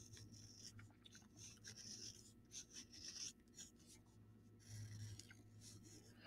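Faint, intermittent scratching of a stylus tracing a drawing on paper laid over a foam printmaking sheet, pressing the lines through into the foam.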